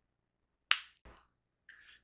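A single sharp click from a tarot card snapping in the fingers as it is picked up and turned over, followed by a faint tick, then a short breath near the end.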